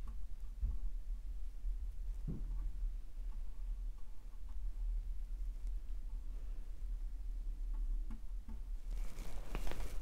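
Bristle brush dabbing and stroking oil paint onto canvas, faint against a steady low hum, with a louder burst of rustling near the end.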